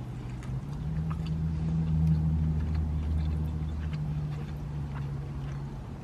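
A low vehicle engine hum that steps up about half a second in, swells and then eases off, with faint chewing of crispy fried chicken.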